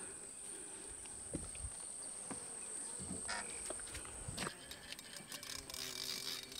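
Steady high-pitched buzz of insects, with a few faint knocks and clicks from hands working fishing tackle and bait; the buzz stops about four and a half seconds in.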